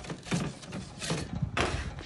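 Metal pizza peel scraping and knocking, a handful of short scrapes, as it is drawn back from under a flatbread on the oven stone and laid down on a steel worktop.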